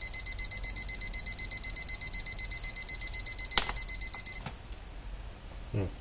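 Digital thermometer-timer's alarm beeping rapidly, about seven high beeps a second, signalling that the water has reached 212°F, the boil. A click comes just before the beeping cuts off about four seconds in.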